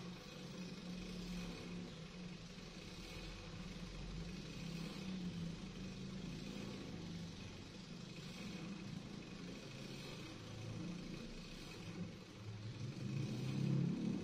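Electric pedestal fan with a modified rim-shaped blade running down to a stop, a low motor hum under the whir of the blade. The low sound swells louder near the end.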